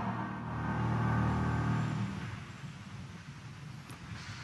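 Low rumble of a congregation moving as it kneels, strongest for about two seconds and then fading away.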